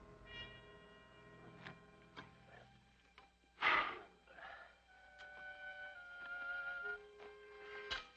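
Quiet dramatic background score of held notes that change pitch in slow steps, broken once about three and a half seconds in by a short loud burst of noise.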